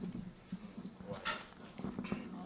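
Metal spoon clicking against a small porcelain bowl while eating, a few light knocks over a low steady hum, with a brief voice about a second in.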